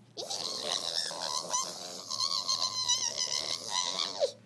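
A long, high-pitched, wavering vocal squeal held for nearly four seconds, with a couple of brief breaks.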